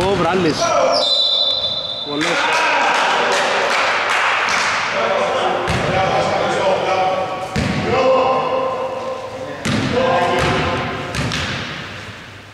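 Indoor basketball game in a large, echoing gym: a referee's whistle sounds briefly near the start as play stops for a foul, then players' voices and shouts carry on with a basketball bouncing and thudding on the wooden floor.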